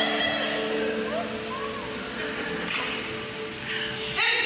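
Electronic keyboard holding soft sustained chords, with a voice faintly over it.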